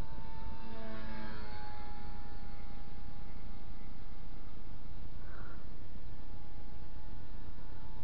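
XK K120 electric RC helicopter in flight at a distance: a thin, steady whine from its brushless motor and rotors, dipping slightly in pitch about a second and a half in, over a steady rumble of wind on the microphone.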